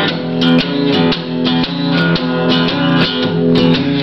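Steel-string acoustic guitar strummed in a steady country rhythm, about two strong strokes a second, with no singing.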